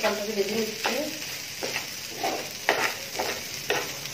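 Steel spatula stirring and scraping raw rice grains as they fry in an oiled pan: a steady sizzle, with a scrape stroke about every half second.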